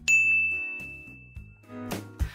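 A single bright ding, a bell-like chime sound effect, striking at the start and ringing out over about a second and a half above a low bass note. Near the end a music bed swells in.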